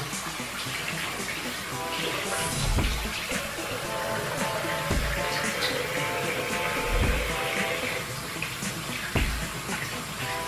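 Water running steadily from a tap into a sink, under background music with a low beat about every two seconds.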